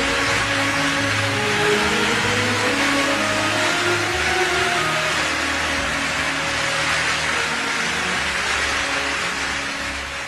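Music holding long notes over a dense wash of audience applause, starting to fade out near the end.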